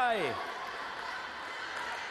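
A man's shout falls away in pitch in the first half second. After it comes a steady wash of indoor pool-hall background noise, with no distinct events.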